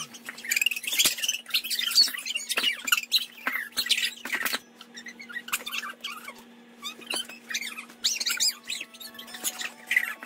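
Children squealing, shrieking and laughing in short, high-pitched bursts, busiest in the first half and again near the end.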